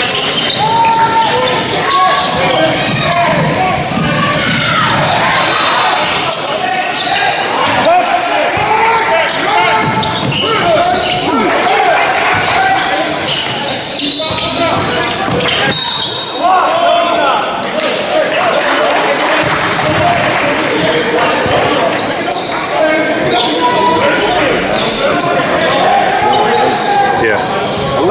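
Basketball game in a large gym: a ball repeatedly bouncing on the hardwood floor, with players and coaches calling out over the play, all carrying in the hall's echo.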